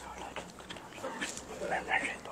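Quiet sound of a large congregation standing in silent prayer: faint rustling and shuffling, with a brief faint voice-like whine near the end.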